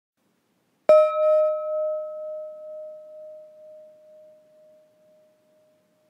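A meditation gong struck once about a second in, its clear ringing tone wavering as it fades away over about four seconds. It marks the passing of a minute in the silent sitting.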